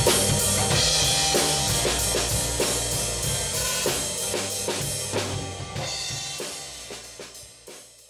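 Drum kit played along to a pop-rock backing track, with a steady beat of snare, bass drum and Zildjian cymbals. The whole mix fades out steadily and is nearly gone at the end.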